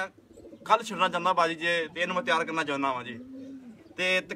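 Domestic pigeons cooing in the loft, low rising-and-falling calls mixed in with a man's voice.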